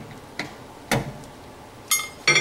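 Three sharp clicks as a small flathead screwdriver pries at the plastic rivet tab on a microwave's stirrer fan cover: a light one about half a second in, a stronger one a second in, and the sharpest near the end, with a brief metallic ring.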